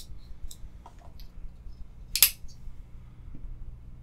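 Light clicks of a folding pocket knife being handled and set down on a rubber mat next to another knife, with one sharp clack a little over two seconds in.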